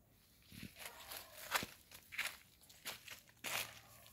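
Footsteps through dry fallen leaves and undergrowth: a run of about six or seven uneven steps, some louder than others.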